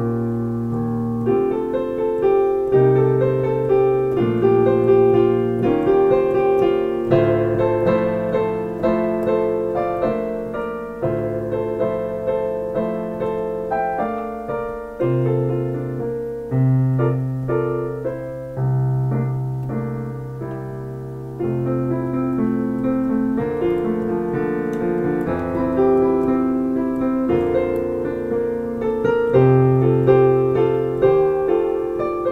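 Solo piano playing a bossa nova: a melody over a left-hand bass line and chords, the notes struck one after another without a break.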